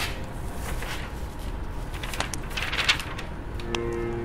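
Low room rumble with a few faint rustles and clicks, the clearest a short rustling scrape about three seconds in. A sustained music chord comes back in near the end.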